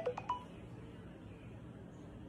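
A smartphone gives a few short electronic tones, each with a click, as it is tapped; they stop about half a second in, leaving a faint steady room tone.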